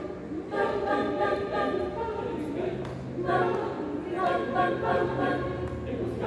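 A group of voices singing a repeated a cappella chant in several parts over a held low note, with no instruments. The phrase starts again about every three seconds.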